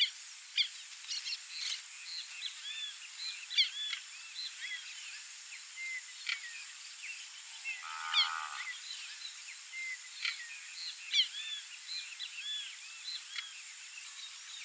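Many small birds chirping, with short rising and falling notes overlapping one another. About eight seconds in, a single lower, buzzy call stands out for under a second.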